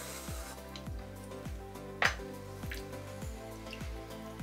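Background music with a steady beat: low drum hits about two to three times a second over held tones, with one sharp knock about halfway through.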